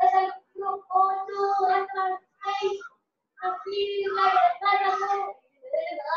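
A child singing in short phrases, mostly held on one steady note, with a short pause about three seconds in, heard over a video call.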